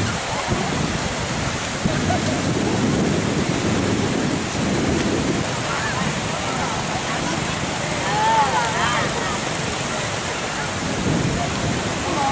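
Sea surf washing onto a sandy beach, a steady hiss with wind buffeting the microphone. A voice calls out briefly about eight seconds in.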